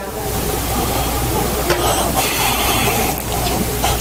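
A steady rushing hiss over a low hum, starting and cutting off abruptly.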